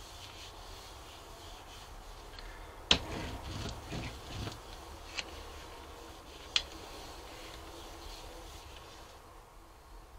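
A hand rubbing and pressing a sheet of paper onto a gel printing plate, a soft brushing, over a low steady hum. A few sharp clicks or taps break in, the loudest about three seconds in and two smaller ones a few seconds later.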